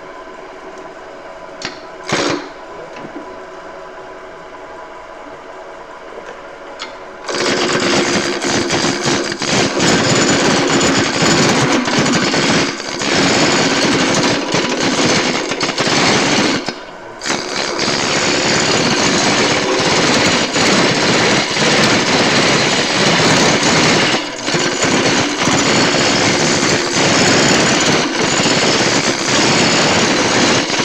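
Wood lathe running with a steady motor hum, then about seven seconds in a hand-held turning tool bites into the spinning maple rolling-pin blank and the loud, rough sound of the cut runs on. It is broken by one short gap about seventeen seconds in, and there is a single click about two seconds in.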